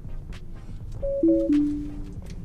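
Tesla Model 3 Autopilot disengaging chime: a short falling chime of a few clean notes, about a second in, as the driver takes back the steering. Low road rumble inside the cabin underneath.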